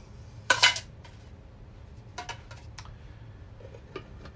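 Thin titanium windscreen sections clinking against a metal pot as they are packed inside it: one ringing metallic clink about half a second in, then a few lighter clicks, and a small tap near the end as the lid is set on.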